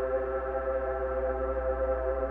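Electric guitar held as an infinite reverb wash from a Line 6 POD HD500's Particle Verb at 100% dwell: a steady ambient pad of several sustained tones with no new notes struck. A steady low hum sits underneath.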